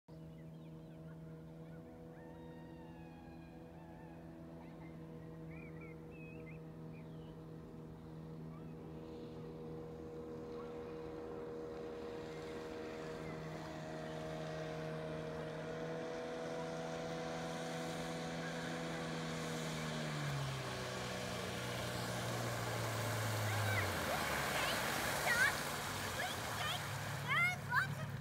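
Small outboard motor on an inflatable dinghy approaching, its steady hum growing louder. About twenty seconds in it throttles back to a lower note, and the engine note stops a few seconds before the end, leaving a rush of water from the dinghy's wash.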